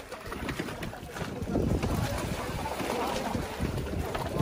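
Wind rumbling on the microphone over choppy sea water lapping and splashing, with a child kicking in the water in a swim ring.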